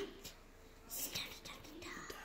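Quiet whispered speech, a couple of breathy bursts about a second in and near the end, with a few faint ticks from small plastic toys being handled.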